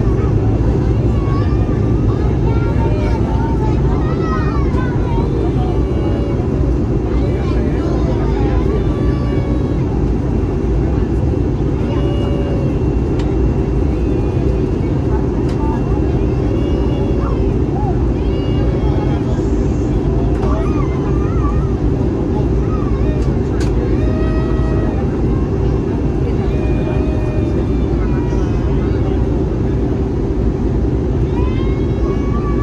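Steady cabin roar of an Airbus A320neo airliner on descent: engine and airflow noise heard from a window seat beside the engine. Faint passenger voices murmur underneath, and there is one brief click past the middle.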